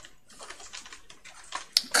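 Computer keyboard being typed on: a run of light key clicks, with a few sharper strokes near the end.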